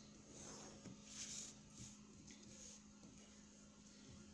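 Near silence: faint scratching of a pen drawn along a ruler on paper, over a faint steady hum.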